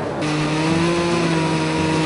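Countertop electric blender running steadily, pureeing garlic, chili peppers and ginger, with an even motor whine.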